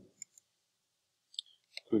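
A few short, faint clicks in a pause between words, two about a quarter second in and a small cluster shortly before speech resumes.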